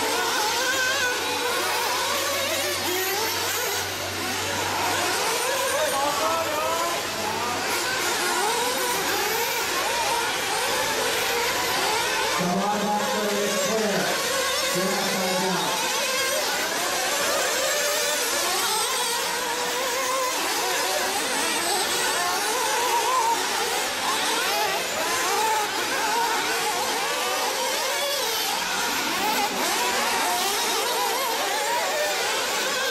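Several nitro RC buggies racing at once, their small two-stroke glow engines whining high and overlapping, each rising and falling in pitch as it accelerates and brakes around the track.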